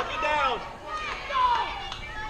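Young girls' voices shouting and cheering from the dugout and stands during a softball game, with high pitches that rise and fall.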